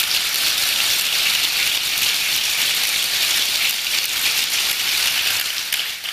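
Audience applauding, a dense steady clapping that eases off near the end.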